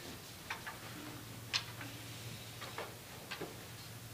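Scattered short, sharp clicks and light knocks, several in close pairs, the loudest about a second and a half in: footsteps on a wooden stage and a wooden piano bench being carried and set down.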